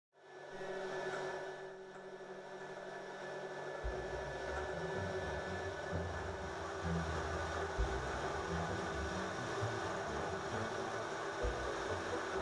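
A machine running steadily, a hum with a few fixed whining tones over a hiss. A low, uneven rumble joins about four seconds in.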